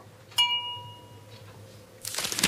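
A single bright glass clink that rings on with a clear bell-like tone for about a second and fades away.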